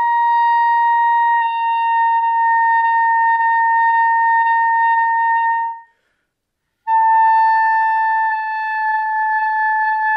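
A clarinet holds a steady high C in the upper clarion register and sags slightly in pitch about a second and a half in, as the register key is let go and the note is kept on the upper partial by voicing. It stops near six seconds. After about a second's pause, a held high B follows and sags in the same way.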